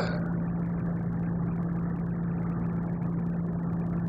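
A steady low hum with an even hiss beneath it, unchanging throughout.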